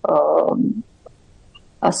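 A woman's voice holding a drawn-out hesitation vowel that trails off in pitch, then about a second of quiet room noise before her speech starts again near the end.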